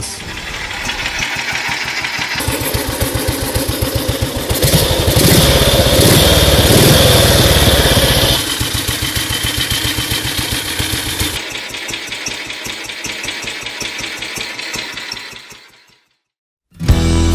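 BSA M20's 500cc side-valve single-cylinder engine running with an even beat of firing strokes. It is revved up for a few seconds in the middle, settles back to idle and fades out at the end.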